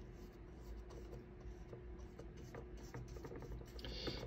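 Faint, scratchy strokes of a paintbrush laying oil paint onto a canvas.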